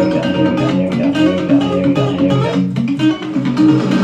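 Guitar playing a song: a steady run of picked single notes and chords, with no singing.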